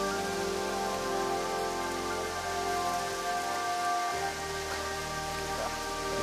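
Steady rush of water falling from a thin waterfall onto rock, under background music of long held notes.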